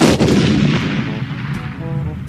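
Cartoon sound effect for a sudden arrival in a cloud of dust: a loud burst right at the start that fades slowly over about two seconds, over background music.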